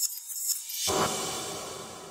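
Graphics sound effect for an animated on-screen title: a high shimmer, then a little under a second in a sudden swish-and-hit that rings on and slowly fades.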